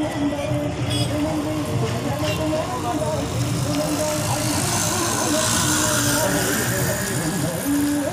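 Street ambience of passing traffic with a melody of long, wavering held notes playing over it; a vehicle passes close by around the middle, raising the hiss for a couple of seconds.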